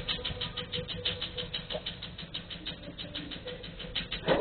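Rapid, even clicking at about ten clicks a second from a tattoo-removal laser firing its pulses.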